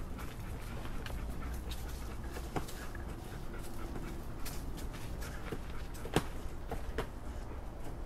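A dog digging a hole in dry dirt: irregular scratching and scraping of claws in the soil, with loose earth scattering.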